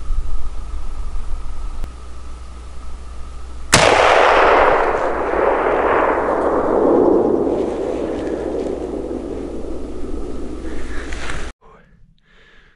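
A single hunting-rifle shot about four seconds in: a sharp crack followed by a long rolling echo that slowly fades. It is the shot that dropped a bull elk. A steady low rumble sits underneath before the shot.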